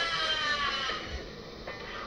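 Audio of the clip being watched: a high, wavering held sound that fades out about a second in, leaving only faint background.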